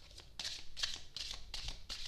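A deck of large divination cards being shuffled by hand: a quick series of soft swishes as cards slide past one another, about five in two seconds.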